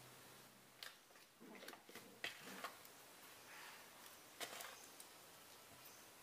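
Faint sounds of fish-and-tapioca paste being mixed in a plastic bowl: a few light clicks of a spoon against the bowl and soft squishing of the sticky paste.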